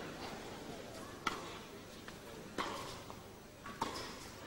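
Tennis ball struck by rackets in a baseline rally: three sharp hits about 1.3 seconds apart, over quiet hall ambience.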